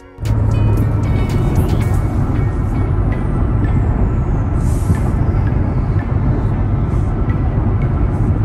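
Steady road and engine noise inside a car cruising at highway speed, with music playing underneath.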